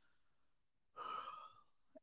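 Near silence, broken about a second in by a short, faint breath or sigh from a person pausing mid-sentence.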